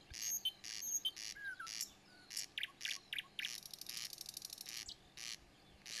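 Birds chirping in short, high calls repeated throughout, with a fast trill of evenly spaced notes around the middle.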